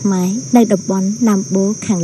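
Insects giving a steady high-pitched drone, heard under a woman talking to camera outdoors.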